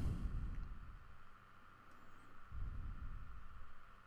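Faint room tone and steady microphone hum, with a soft low rumble from about two and a half seconds in.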